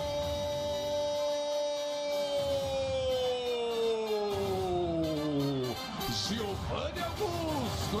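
A Brazilian football commentator's long drawn-out goal cry, "Gol!", held on one note for several seconds, then sliding down in pitch and ending about six seconds in. Mixed voices and stadium noise follow.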